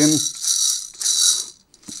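Plastic baby rattle shaken twice: small beads rattling inside a clear plastic ball on a frog-shaped toy.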